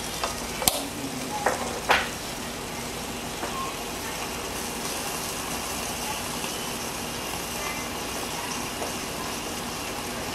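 A few plastic clicks and knocks in the first two seconds as the lid of the Asahi 2-in-1 waffle maker and panini press is shut and its handles latched together. Then a steady sizzle as the sandwich cooks between the hot grill plates.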